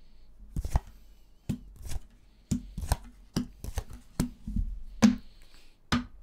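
Lenormand cards being dealt one by one onto a wooden tabletop: a series of sharp taps and slaps roughly every half second, the loudest about five seconds in.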